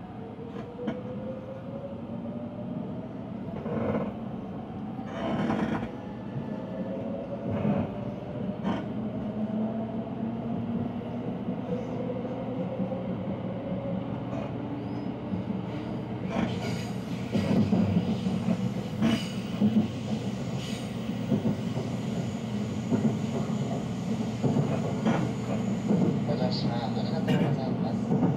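Inside a JR West limited express electric train as it pulls away and gathers speed. The traction motors give a whine that rises in pitch over the first dozen seconds, with a few sharp knocks from the wheels over rail joints or points, and the running rumble grows louder from about sixteen seconds in.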